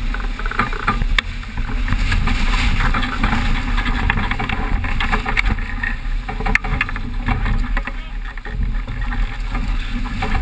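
Strong wind buffeting the microphone and water rushing and splashing along the hull of a sailing yacht driving fast through rough seas. Scattered sharp clicks and knocks run through the noise.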